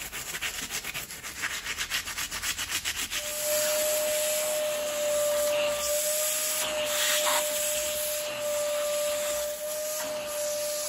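A stiff bristle brush scrubs a foamed rubber boot sole in rapid back-and-forth strokes. About three seconds in, a vacuum starts and runs steadily with a steady whine, its hose sucking the cleaning foam off the sole.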